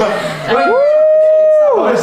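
A single long howl that rises, holds steady for about a second, then falls away.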